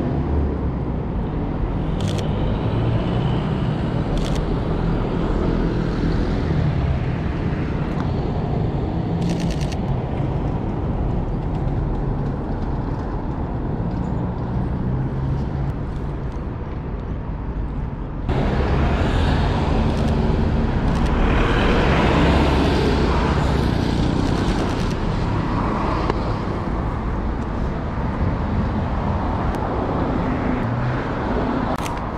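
City street traffic noise, a steady rumble of passing cars, with a few sharp clicks in the first ten seconds. About 18 seconds in the background becomes abruptly louder and brighter.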